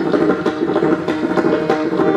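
Pakhawaj solo: sharp two-headed barrel drum strokes over a harmonium repeating a steady melodic loop (lehra) of held reedy notes.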